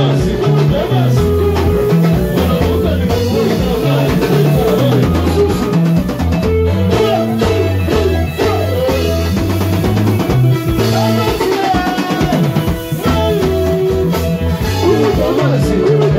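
Live band playing dance music: drum kit and electric guitar keep a steady, fast groove while a singer sings into a microphone.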